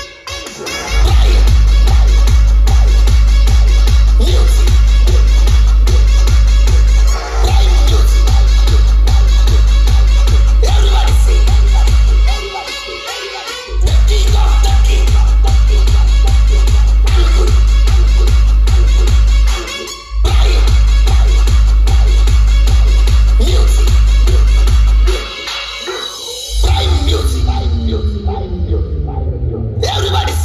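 Loud electronic dance music played through a large DJ sound system at a sound check, with very heavy deep bass. The bass drops out briefly several times, twice for about a second. Near the end a new section comes in with sliding pitch sweeps.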